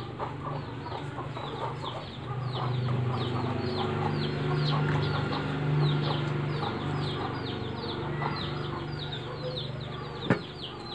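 Birds peeping: many short falling chirps, several a second, over a low steady hum that grows louder about two seconds in and fades near the end.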